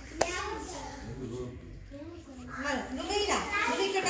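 Young children talking quietly, with one sharp hand clap just after the start.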